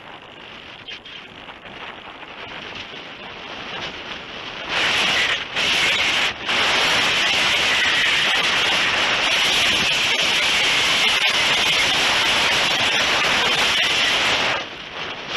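Wind rushing over the onboard camera's microphone on a Multiplex Heron RC glider in flight. It is moderate at first, then about five seconds in it jumps suddenly to a loud, steady hiss, briefly dropping out twice before holding.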